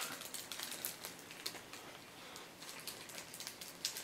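A bite taken from a Jos Louis chocolate snack cake and chewed: faint, irregular crackly clicks as the flaky chocolate coating breaks up.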